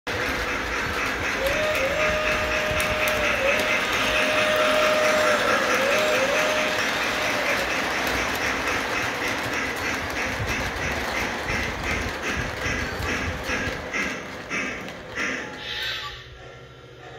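O-gauge three-rail model freight train running on tubular track: a steady rolling rumble with regular clicking of wheels over the rail joints. In the first seven seconds a long pitched signal tone from the locomotive's sound system sounds in a few drawn-out blasts, and the running noise fades near the end.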